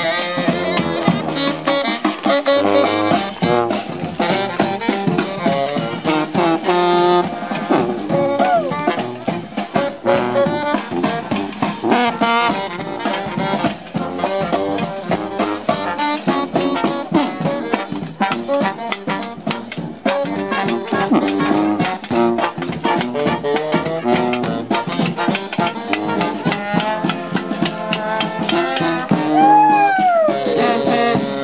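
A marching brass band playing a lively jazz tune: sousaphone bass, trumpets and saxophone over a steady snare-drum beat.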